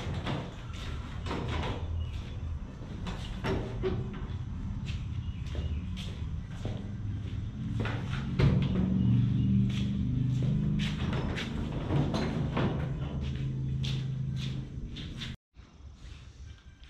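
Knocks, thumps and clicks as the hood of a pickup is handled and worked loose, over quiet background music.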